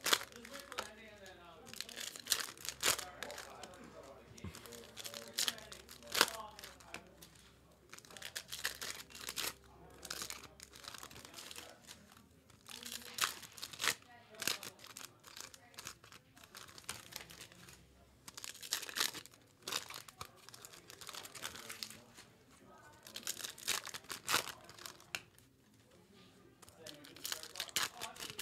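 Trading-card pack wrappers being torn open and crinkled, with the cards handled and squared into stacks: an irregular run of short crackles, rips and light clicks.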